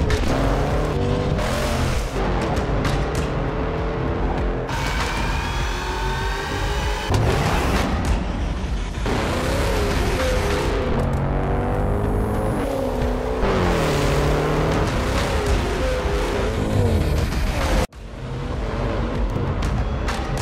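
Soundtrack music mixed with the Jaguar F-Pace SVR's 5.0-litre supercharged V8 revving hard, its pitch climbing and falling through gear changes as it accelerates. The sound cuts out for an instant near the end, then comes back.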